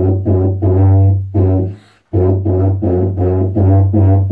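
Silver tuba playing a line of short, separately tongued low notes. There is a brief breath break about two seconds in, then quicker, evenly spaced notes.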